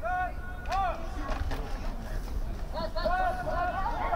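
Several people shouting across an open field during an American football play, short high calls that rise and fall in pitch, over a low outdoor rumble. A few sharp knocks come in the first second and a half.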